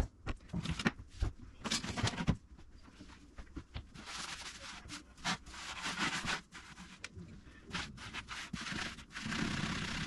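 A few knocks and clatters as bottles and boxes are lifted off a wooden cabinet shelf. Then a scrub sponge wipes the bare shelf, a rough rubbing that comes in strokes.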